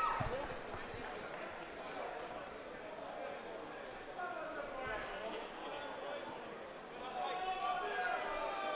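Faint murmur of voices in a large hall, with a dull thump just after the start.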